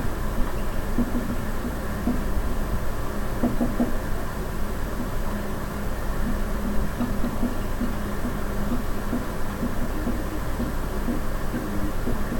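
Dry-erase marker writing on a whiteboard, short irregular scratches and taps, over a steady room hum.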